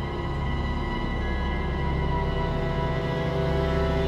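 Music: a steady low bass drone under several long held notes.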